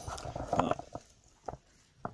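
Camouflage shelter-half poncho fabric rustling as it is handled, loudest in the first second, then a single sharp click about one and a half seconds in.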